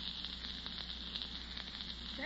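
Steady hiss and faint crackle of an old 1940s radio broadcast recording, with a low hum underneath.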